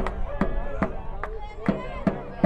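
Sharp percussive beats in a steady rhythm, about two and a half a second, with voices calling over them.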